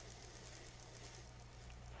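Near silence: faint room tone with a steady low hum and hiss.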